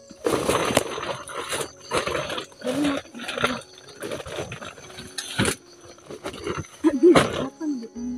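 Woven plastic feed sacks rustling and crinkling in irregular bursts as they are handled, stopping about five and a half seconds in; a short vocal sound follows near the end.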